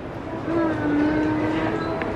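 A woman's voice holding one long, steady sung-like note, starting about half a second in.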